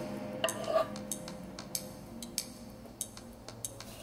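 Kitchen knife slicing a soft peeled avocado on a cutting board, the blade tapping the board in a handful of irregular light taps.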